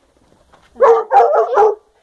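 A dog barking, a quick run of about four short, loud barks starting nearly a second in.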